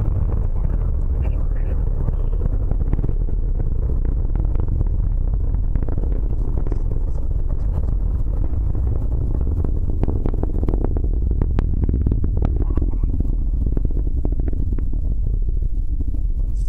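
Atlas V rocket's RD-180 engine heard from far off during ascent: a deep, steady rumble with sharp crackles, thickest about ten to thirteen seconds in.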